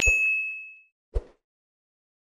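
Subscribe-button animation sound effects: a mouse click followed at once by a bright, ringing ding that fades out in under a second, then a short low pop about a second later.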